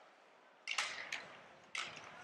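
Faint ice-hockey rink sound heard from the broadcast booth: two sharp knocks about a second apart, each with a short echoing tail, over a low, steady arena hiss.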